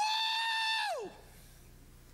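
A man's squealed falsetto "What?!", mimicking a woman's shocked reaction: the pitch leaps up, holds high for most of a second, then slides down and stops, leaving quiet room tone.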